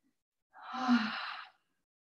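A woman's audible exhale, a breathy sigh lasting about a second, as she breathes out into downward-facing dog.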